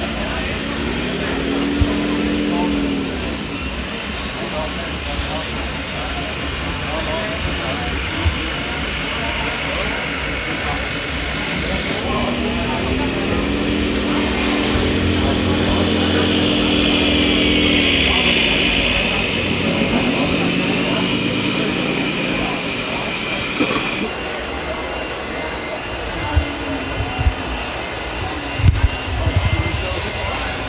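Diesel truck-engine sound from a model truck's sound module revving up, holding and dropping back twice, the second time for several seconds, over the steady chatter of a crowd. A few sharp knocks come near the end.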